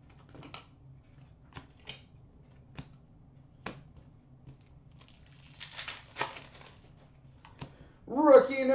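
Faint clicks and taps of trading cards being handled and set down on a glass counter, with a brief rustle of cards sliding about three-quarters of the way through.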